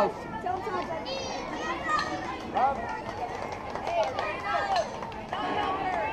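Scattered, fainter voices of people talking and calling out at an outdoor softball field, over a steady background hum of outdoor noise.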